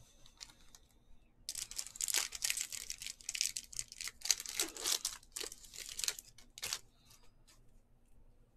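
Wrapper of a 2021 Bowman Baseball Jumbo trading-card pack being torn open and crinkled by hand: a run of crackling tears starting about a second and a half in and stopping near the end, about five seconds long.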